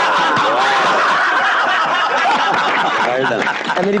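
A group of people laughing hard together, many voices overlapping at once, easing off near the end.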